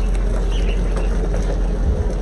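Wind buffeting the microphone outdoors: a steady, loud, low rumble.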